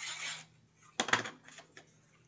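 Dotted double-sided tape runner rolled across cardstock: a short raspy run, then a sharp click about a second in followed by a few lighter ticks.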